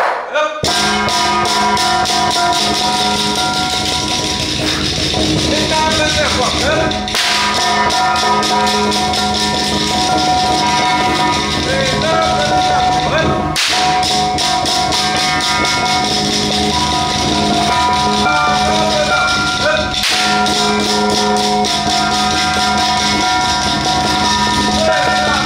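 Ritual music for a Penghu xiaofa rite: a fast, dense roll of percussion with ringing metallic tones sustained over it, and a chanting voice weaving in now and then.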